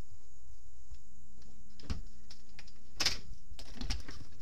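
Handling noise from a handheld camera: scattered light clicks and taps, then a louder rustle about three seconds in and a shorter one near the end.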